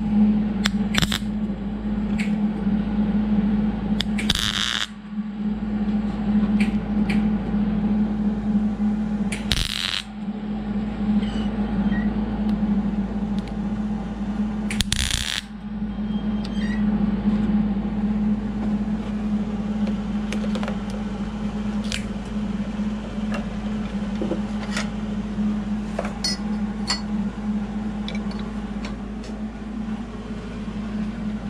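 Steady hum from a tool held at the aluminium turbo actuator housing, with small metal clicks and scrapes as a pick works at the part in the vise. Three short hissing bursts come about 4, 10 and 15 seconds in.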